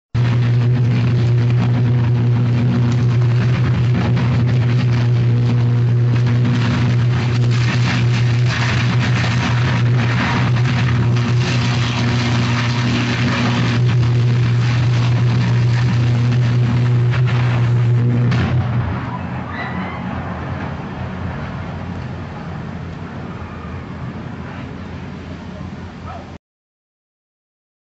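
Sustained electric arc from a short-circuit in a 110 kV substation power transformer: a loud, steady low buzz with crackling over it. The buzz cuts off about 18 seconds in, leaving a quieter crackling noise of the burning transformer.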